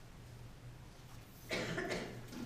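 A person coughing once, a short loud burst about one and a half seconds in, over a faint steady hum.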